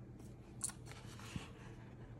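Faint handling of a cardboard box and paper packaging on a table: a sharp click about a third of the way in, a brief papery rustle, and a soft knock.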